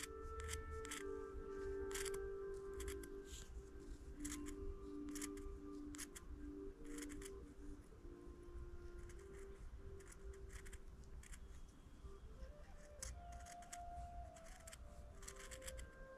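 Small scissors snipping through ultrasuede backing fabric in short, irregular cuts while trimming close around a beaded piece. Soft background music with held notes plays faintly underneath.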